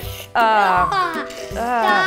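Light background music under a person's voice, which rises and falls in pitch in untranscribed exclamations.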